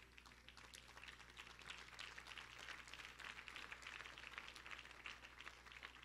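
Near silence with faint, rapid crackling and rustling of paper handled at a pulpit, over a low steady hum.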